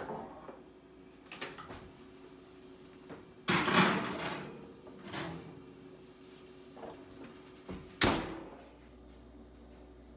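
A kitchen oven door opening with a long scraping swing about three and a half seconds in, a glass baking dish clinking as it is set on the metal rack, and the door shut with a sharp knock about eight seconds in.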